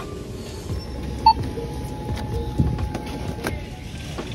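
Low, steady shop background rumble with one short electronic beep about a second in, followed by a faint steady tone that lasts a couple of seconds.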